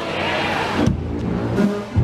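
Ohio University's marching band playing loud and close: first a dense, noisy wash of sound, then, about a second in, sustained low brass notes from sousaphones and horns with sharp drum hits.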